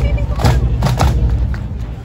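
Pipe band drum corps playing snare and bass drums: a few sharp strikes about half a second apart over a steady low drumming, with voices in the crowd around.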